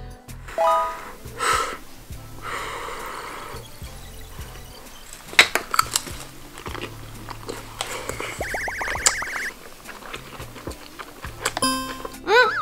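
Background music with a steady beat, over crunching and chewing as a spicy potato chip and tteokbokki rice cake are bitten and eaten. A cartoonish wobbling sound effect comes a little after the middle.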